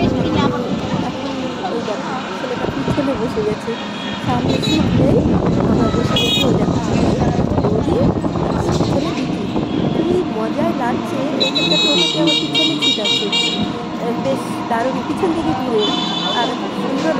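Road traffic with vehicle horns honking: a short honk about six seconds in, a longer, rapidly pulsing honk from about eleven to thirteen and a half seconds, and another honk starting at the very end.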